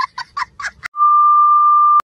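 A child laughing in quick high-pitched bursts, about five a second, then a loud steady electronic beep of one pitch for the last second.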